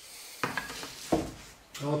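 A thin wooden strip of sawn juniper knocking twice against the boards laid out on a workbench, clattering as it is handled and put down.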